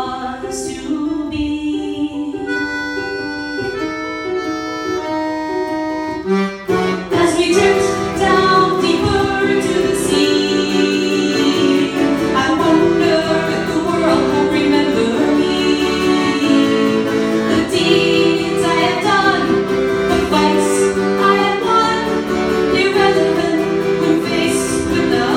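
Ukulele and accordion playing a song together. A few seconds in the music thins to held accordion notes, then about six seconds in the strumming comes back and it gets fuller and louder.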